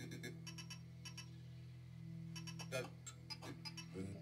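Live experimental electronic music: a steady low drone with scattered, irregular clicks and ticks over it.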